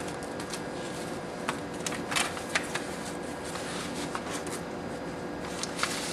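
A small plastic zip bag and paper forms being handled and slid into a paper envelope, rustling and crinkling in short irregular crackles, busiest around two seconds in and again near the end, over a faint steady hum.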